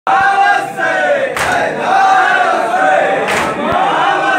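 Men's voices singing a nauha (Shia mourning lament) together, a lead reciter with a chorus, in long held, wavering notes. Two sharp slaps cut through, about two seconds apart, in time with the chant.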